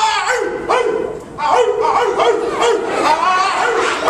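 Human voice barking like a dog in short repeated woofs, about two a second: the bark of the Omega Psi Phi fraternity.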